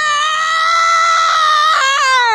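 A person's long, loud, high-pitched scream held on one note. It slides up at the start and begins sliding down near the end.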